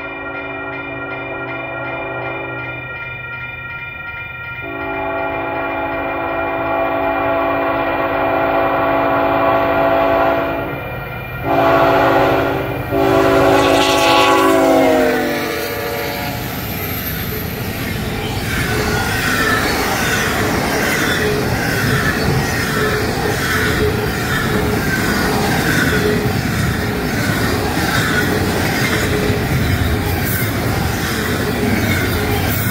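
Diesel locomotive air horn sounding four blasts (long, long, short, long), the grade-crossing signal, with the last blast dropping in pitch as the locomotive passes. Then comes the steady rumble of a double-stack intermodal freight train rolling by close up, with wheels clicking at an even rhythm over the rail joints.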